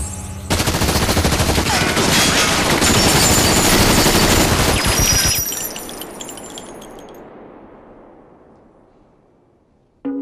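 Sustained automatic rifle fire from several guns at once: a dense volley lasting about five seconds that stops abruptly, then a long echo fading away over the next four seconds.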